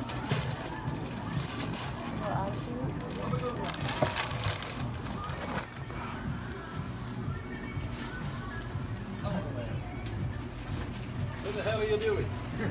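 Indistinct talk over quiet background music, with a sharp knock about four seconds in.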